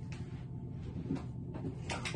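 Off-camera knocks and clatter of someone rummaging at a dresser, a few short strokes with the loudest near the end, over a steady low hum.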